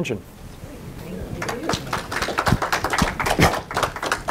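Audience applauding in a small lecture room, a smattering of claps that builds into steady clapping from about a second and a half in.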